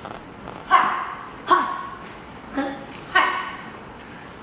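A dog barking: four short barks spread across a few seconds.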